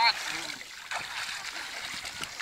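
Water splashing and trickling as people move about waist-deep in a lake, with small splashes from hands scooping water.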